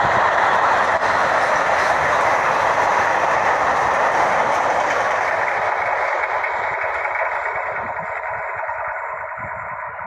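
Empty car-carrier freight wagons rolling past on the rails, their wheels running over the track. The sound fades steadily from about halfway through as the end of the train draws away.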